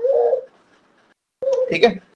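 A bird's low cooing call, held for a fraction of a second at the start, one of a regularly repeated series; a man speaks briefly near the end.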